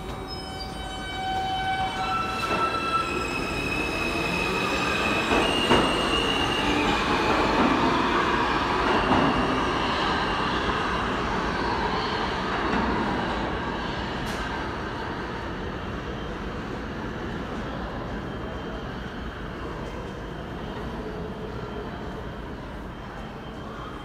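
New York City subway train pulling out of the station: its propulsion gives a stepped, rising whine for the first few seconds as it accelerates. Then wheel-on-rail rumble builds to its loudest around eight seconds and slowly fades as the train runs off into the tunnel.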